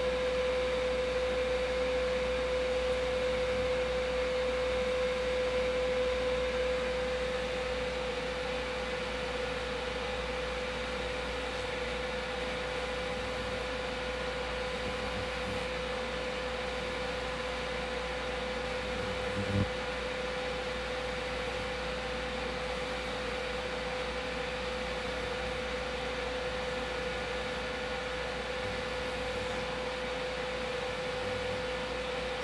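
Ultrasound cavitation handpiece of a Zemits body-contouring machine running as it is glided over oiled skin, giving off a steady, single-pitched hum over a faint hiss. A brief soft knock comes about two-thirds of the way through.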